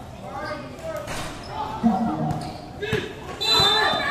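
A basketball bouncing on a concrete court, a few single knocks in the second half, amid players and spectators shouting, with a loud burst of shouting near the end.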